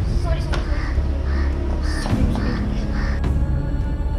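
House crows cawing repeatedly, about two calls a second, over a steady low hum. Music comes in near the end.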